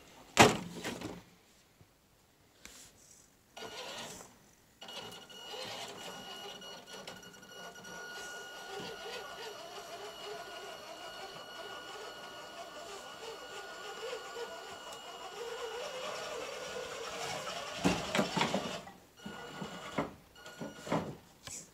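Axial RC rock crawler's electric motor and geared drivetrain giving a steady whine as it crawls slowly over a wooden plank course. There is a sharp knock about half a second in, and a clatter of knocks near the end as the tyres and chassis bump over the planks.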